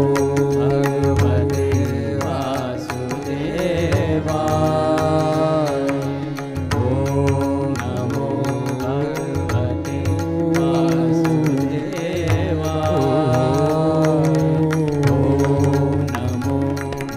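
Devotional Hindustani classical singing: a male voice holds long notes of a Krishna mantra and glides slowly between them, over a steady drone with tabla strokes.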